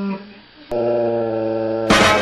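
A dog's howl tails off, falling in pitch. About two-thirds of a second in, a steady held musical note starts abruptly, and just before the end loud music with drums cuts in.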